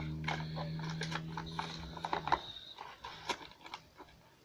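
Quick clicks and rustles of a paper card being worked under the corner tabs of a plastic spin-art platter, with fingers tapping on the plastic. Under them a low steady hum cuts off suddenly a little after two seconds in.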